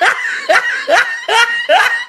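A run of short, rhythmic bursts of laughter, about five in two seconds, each a quick pitched 'heh'.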